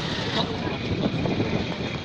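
Roadside street noise: vehicle traffic running past, with indistinct voices of people nearby.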